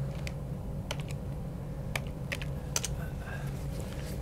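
Typing on a computer keyboard: about a dozen irregular key clicks as a Bible verse reference is entered into a search box, over a faint steady hum.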